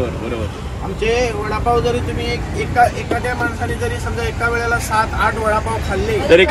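People talking over a low, steady rumble of street traffic.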